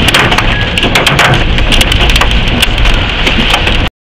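Hailstones hitting a car's body and windscreen, heard inside the cabin: a loud, dense rattle of hard, irregular hits that cuts off suddenly near the end.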